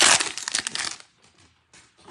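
Foil wrapper of a 2022 Bowman baseball card pack torn open and crinkled by hand, a dense crackle lasting about a second.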